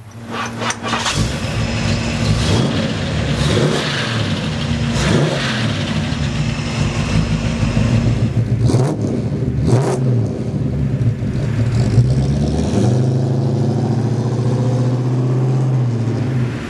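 Hot-rodded Ford 390 V8 with headers and glasspack mufflers revving several times, its pitch climbing and falling, then settling into a steady run near the end.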